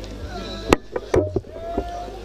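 A handful of sharp knocks at irregular spacing, the loudest about three-quarters of a second in, over a steady low hum and faint voices.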